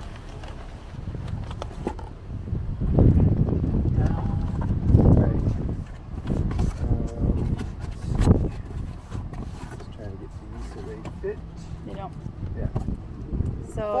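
A cardboard case of bottles being handled in a car's cargo area: irregular heavy thuds and knocks as it is set down and the bottles are moved around in it, the loudest about three and five seconds in, with a sharp knock about eight seconds in.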